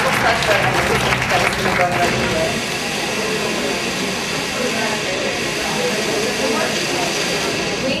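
Countertop blender running steadily: a motor hum with several even tones over a hiss. It stops near the end.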